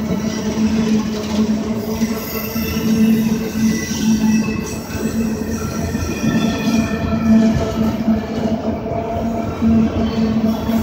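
Freight train of autorack cars rolling past close by: a continuous rumble of steel wheels on rail with a steady low drone. Thin high-pitched wheel squeals come and go over it.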